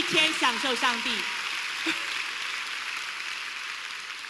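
A large congregation applauding, the clapping dying away gradually over a few seconds.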